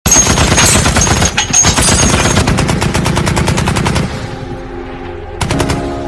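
Rapid automatic gunfire, a fast steady stream of shots that starts suddenly and runs for about four seconds. It gives way to sustained ringing tones, with a second short burst of shots near the end.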